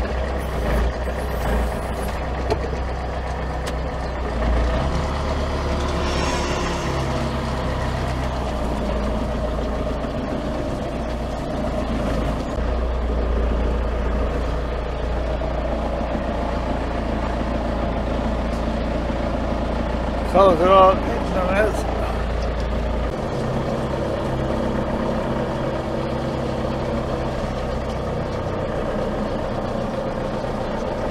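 Manitou telehandler's diesel engine running steadily, heard from inside its cab, with a low hum that eases a little about 23 seconds in. A brief wavering call rises over it about twenty seconds in.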